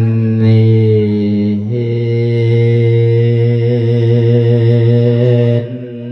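A monk's amplified voice chanting a drawn-out melodic thet lae (Isan sermon-chant) passage: two long held notes, the second starting about two seconds in, breaking off shortly before the end.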